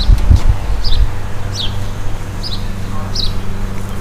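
A songbird calling repeatedly: about five short, high, downward-sliding chirps, roughly one a second, over a steady low hum and a brief low rumble near the start.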